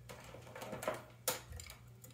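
Patch cables being handled and their 3.5 mm plugs pushed into jacks: a few light clicks and knocks, the sharpest a little past a second in.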